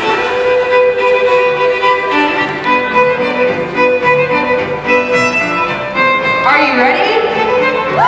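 Square dance fiddle music starting up, held fiddle notes over a steady repeating bass line. About six and a half seconds in, a voice rises over the music in a call.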